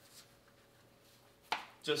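Quiet room tone with a faint steady hum, then a single short, sharp click about one and a half seconds in, just before speech resumes.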